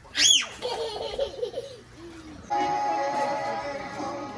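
A toddler's short, high-pitched shriek, followed by about a second of giggling laughter. About two and a half seconds in, background music with steady held notes comes in.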